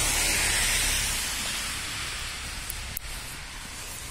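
Steady hiss of noise on the phone's microphone outdoors in the snow, fading gradually, with a faint click about three seconds in.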